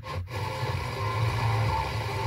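Car FM radio tuned between strong stations to a weak, noisy signal with hiss and static. It cuts out briefly about a quarter second in as the tuner steps to the next frequency.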